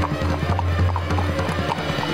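Dramatic background music with a steady low drone, over the clip-clop of a horse's hooves.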